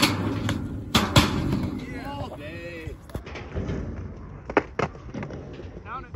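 Skateboard wheels rolling on concrete, with sharp board clacks at the start and twice about a second in. After a cut, two more quick clacks come near the end, with short bits of voices in between.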